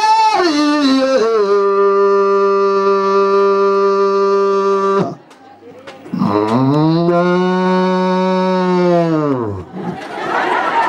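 A black-and-white dairy cow mooing twice: a long call of about five seconds that drops in pitch and then holds steady, and after a pause of about a second, a shorter call that rises and then falls away.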